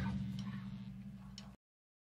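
The tail end of a blues recording after the song stops: a low hum and a couple of faint clicks fading away, then dead silence from about one and a half seconds in.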